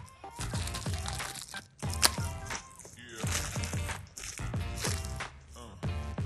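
Background music with a steady beat, over the crinkle of a thin plastic bag being torn open and a small plastic foil poker pulled out of it.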